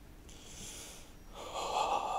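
Breathy, unvoiced exhalations from a person: a soft hiss, then a louder rushing breath from about one and a half seconds in.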